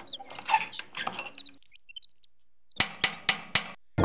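Small homemade plastic model hand pump being handled: scraping and rattling as its handle is worked, with short high squeaks. Near the end come about five sharp clicks in quick succession.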